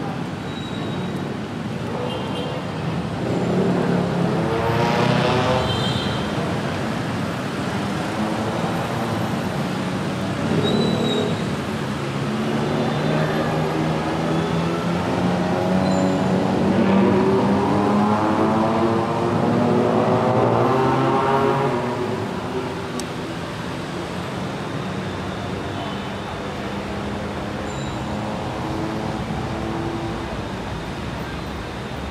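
Street traffic on wet asphalt: motorbikes and cars pull away from a junction, their engines rising in pitch in three waves, the longest and loudest near the middle, over a steady hiss of tyres on the wet road.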